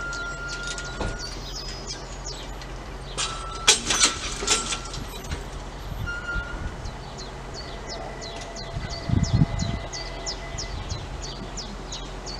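Railway level-crossing barrier booms being lowered, with a burst of loud metallic clattering about four seconds in as they come down. A bird chirps in quick repeated notes through the second half, and a few low thuds come near the end.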